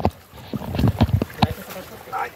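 Footsteps splashing and sloshing through shallow running water on a flooded trail, several steps in quick succession about half a second to a second and a half in.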